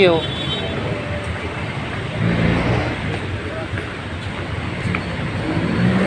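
City street traffic noise, with vehicle engines rumbling by and swelling louder about two seconds in and again near the end.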